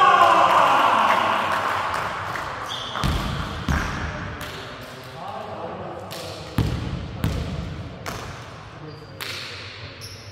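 Men's voices shouting in a large, echoing sports hall. The loudest is a shout right at the start that rings on for a couple of seconds. Then a basketball bounces on the wooden court several times, in pairs about three and about seven seconds in.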